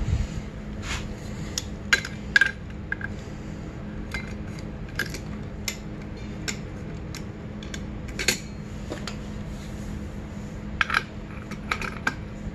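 Homemade steel clutch holding tool, C-clamp vise grips with welded C-channel jaws, clinking and clicking against the dirt bike's clutch basket as it is fitted and positioned by hand. The metal-on-metal taps come at irregular moments, a few of them louder.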